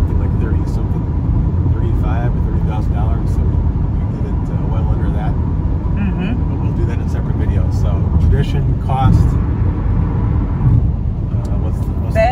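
Steady low rumble of road and engine noise inside a moving car's cabin at highway speed, with a few bits of quiet talk over it.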